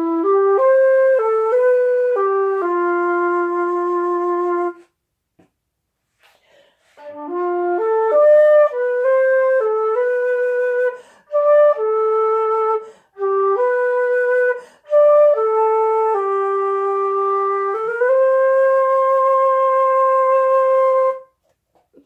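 Concert flute played solo: a short melodic phrase, a pause of about two seconds, then a longer phrase of stepped notes ending on a long held note that stops shortly before the end.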